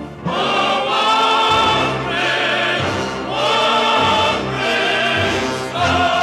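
A musical-theatre chorus singing long held notes over an orchestra, in broad phrases separated by short breaths.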